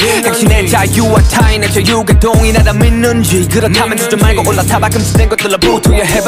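Hip hop track: a male voice rapping over a beat with a steady, deep bass.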